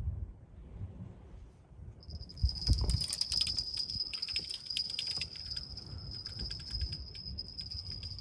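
Fixed-spool fishing reel ratcheting as a fish hits the bait hard and the rod is snatched up. A high whine starts about two seconds in under rapid clicking that runs for several seconds, with a low thud as it begins.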